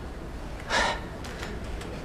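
A single short gasp, a quick sharp intake of breath, about three-quarters of a second in, over low steady background noise.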